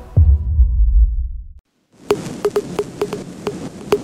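Deep bass boom ending an intro music sting, fading out over about a second and a half, then a brief silence. About two seconds in, field sound begins with a run of sharp, irregular slaps, two or three a second.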